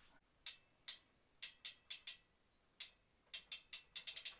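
Faint, sharp, irregular clicks from a road bike's rear hub ratchet as the cranks are turned slowly, about ten ticks with a quicker run near the end.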